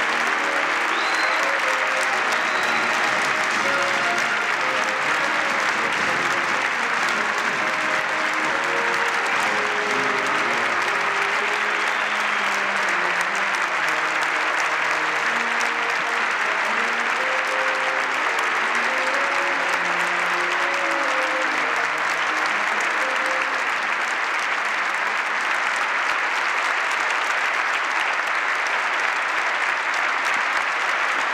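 Sustained audience applause, with a military band playing underneath it; the band's music stops a little over twenty seconds in while the applause carries on.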